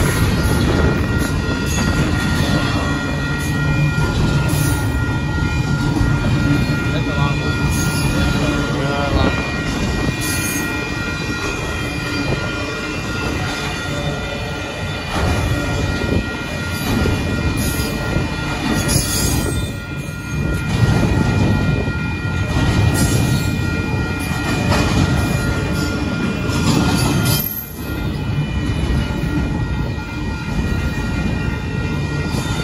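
Double-stack intermodal freight cars rolling past at a grade crossing: a steady, loud rumble and rattle of wheels and cars. The crossing's warning bell rings steadily through it.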